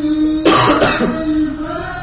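A person clears their throat in one loud, rough burst about half a second in, cutting into a long steady held tone that resumes afterwards.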